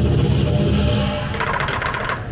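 Lion dance music: a large Chinese drum beating steadily with clashing metal percussion, with a bright cymbal crash about one and a half seconds in.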